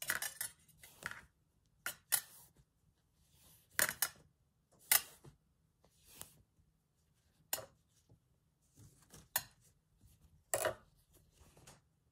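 Scattered light clicks, ticks and rustles of a thin wire armature and torn calico strips being handled as the fabric is wrapped around the wire.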